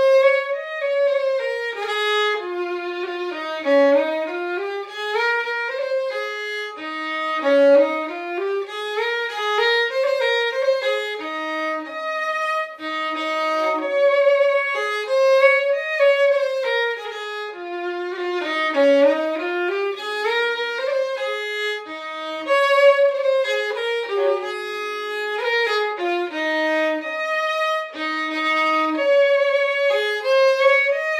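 Solo fiddle playing a slow air, tuned down a semitone: a single bowed melody line of long, held notes that slide up and down.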